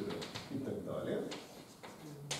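Chalk tapping and scratching on a blackboard as a formula is written, with a low cooing call about half a second to a second in.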